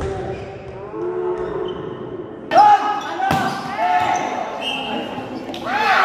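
A volleyball struck hard on a spike, with another sharp ball hit about three seconds in, amid shouting and calls from players and spectators, the loudest near the middle and at the end.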